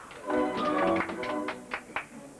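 Ballet orchestra playing a short phrase, with a run of sharp taps in the second half.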